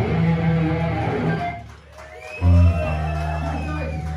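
Live electric guitar and bass holding ringing chords. The sound dips briefly, then a loud chord is struck about two and a half seconds in and left to ring.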